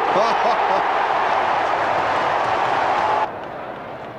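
Stadium football crowd cheering a goal, a loud even roar that cuts off suddenly a little over three seconds in. A steady tone sounds through it shortly before the cut.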